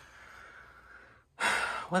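Faint room tone, then a man's sharp, audible in-breath about one and a half seconds in, just before he speaks.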